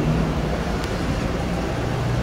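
Steady outdoor background noise, a low rumble and hiss with a faint low hum, like distant traffic.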